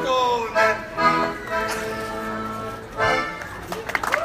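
Piano accordion playing with a man's voice singing over it, winding down to steady held notes.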